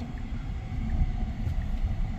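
Steady low road and tyre rumble inside the cabin of a moving Tesla Cybertruck. The truck is electric, so there is no engine note.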